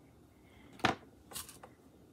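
Small tabletop handling sounds as sprinkles are placed by hand: one sharp click a little under a second in, then a brief rustle.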